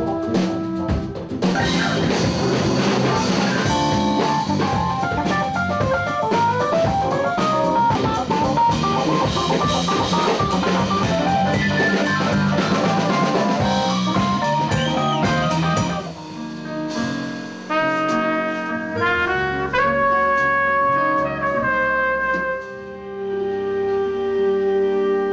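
Live jazz band with trumpet and drum kit: dense full-band playing that thins about two-thirds of the way through to a sparser melodic line of clear held notes, ending on a long held note.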